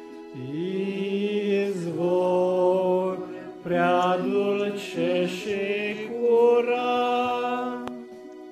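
A small group singing a slow hymn with a Yamaha electronic keyboard playing sustained chords, in long held notes that rise and fall in pitch.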